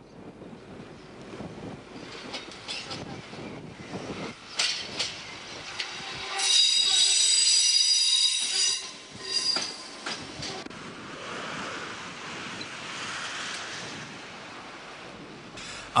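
Berlin S-Bahn class 480 train, pushed by an older class 275 set, rolling slowly over points. Its wheels squeal with several high tones for about two seconds near the middle, the loudest part, with scattered wheel clicks over the rail joints before and after.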